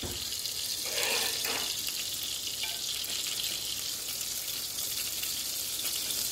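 Eggs frying in a pan on an electric stove, sizzling with a steady hiss.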